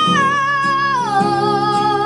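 A young boy singing a long, high held note that slides down to a lower held note about halfway through, over an acoustic guitar played underneath.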